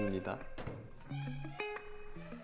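Background music from the show: a simple melody of held notes stepping up and down.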